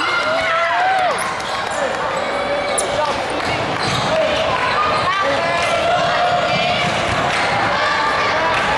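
Basketball bouncing on a hardwood gym floor, with several voices calling out and echoing in a large hall.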